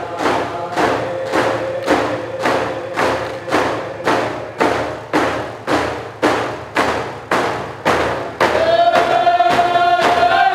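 Dene hand drums beaten in a steady beat, about three strokes every two seconds, under men's group singing. About eight and a half seconds in, the singing gets louder and higher.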